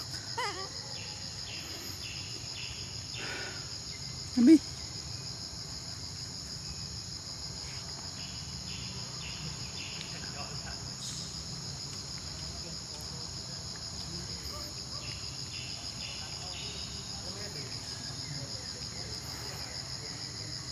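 Steady chorus of insects, a continuous high buzz with a fast pulse. A brief low sound stands out about four seconds in.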